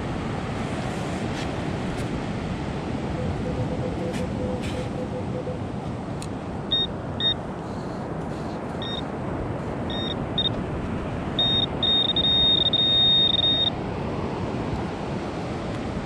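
Handheld metal-detecting pinpointer beeping in a high tone: a few short beeps from about seven seconds in, then nearly continuous beeping for about two seconds near the end as it closes on a buried metal target. A steady rushing background of surf and wind runs under it.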